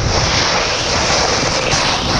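Steady rush of wind on a pole-mounted action camera's microphone, mixed with the continuous hiss and scrape of a snowboard carving over hard, icy snow.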